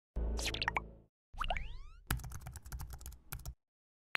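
Intro-animation sound effects: two short swept sounds with sliding pitch in the first two seconds, then a quick run of keyboard-typing clicks lasting about a second and a half as text is typed into a search bar.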